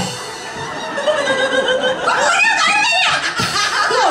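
Live Taiwanese opera (gezaixi) music heard through the stage sound system: a long held note, then from about a second in a short melodic phrase.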